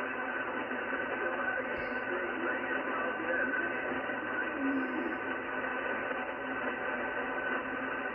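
Icom IC-746PRO HF transceiver receiving lower sideband on 7.200 MHz in the 40-metre band: steady band static cut off above about 3 kHz by the receiver's sideband filter, with several constant whistling carriers in the noise.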